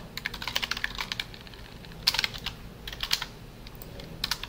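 Typing on a computer keyboard: a quick run of keystrokes through the first second or so, another short burst about two seconds in, then a few scattered keys.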